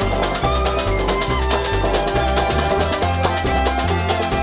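Instrumental string-band music: an upright bass plucks a bass line that changes note about twice a second, under other pitched strings, while a washboard is scraped and tapped in a fast, even rhythm.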